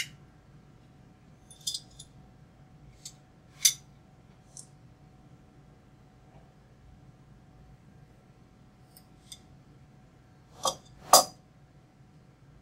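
An adjustable wrench clinking against a bolt as the bolt is loosened. Scattered light metallic clicks come at uneven intervals, with two louder clinks near the end.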